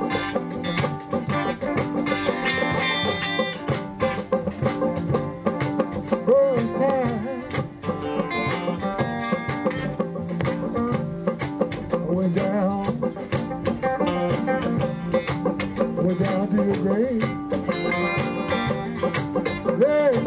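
Live blues band in an instrumental passage: fiddle, electric guitar, bass guitar and banjo playing together, with plucked strings and a melody line that bends and wavers in pitch.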